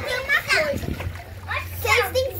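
Water splashing in a small inflatable pool as a child moves in it, with a child's voice heard over it.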